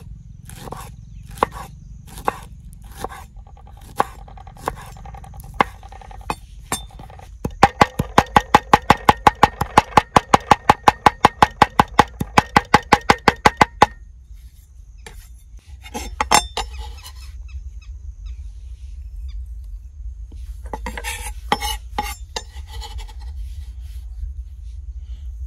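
Chef's knife chopping fresh green leaves on a wooden chopping board: slow single chops about once a second, then a fast even run of about five chops a second for some six seconds. Later there is a brief scrape of the blade across the board and a short quick flurry of chops near the end.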